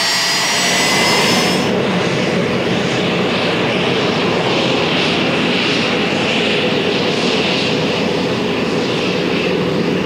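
Jet aircraft engines running on the ground: a high turbine whine with slightly rising tones, which breaks off about a second and a half in and gives way to a steady rushing roar with a slow pulse.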